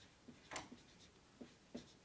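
Faint squeaks and scratches of a marker pen writing on a whiteboard, a string of short strokes, the strongest about half a second in.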